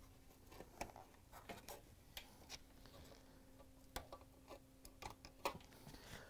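Faint, scattered clicks and light handling noises of gloved fingers pressing locking tabs and pulling plastic wiring-harness connectors off a dishwasher's electronic control board.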